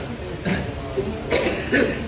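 A person coughing in short bursts, about half a second in and again in a harsher run near the end, over low talk.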